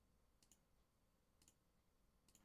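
Near silence, with two faint computer mouse clicks about a second apart.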